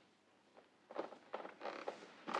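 Soft rustling and creaking of clothing and bodies moving as two people draw into an embrace. It starts about a second in as short, irregular bursts that grow louder.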